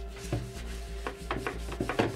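A rag scrubbing freshly applied marker paint off a board in a quick, irregular series of rubbing strokes, several a second. This is a buff test of how easily the marker ink wipes off.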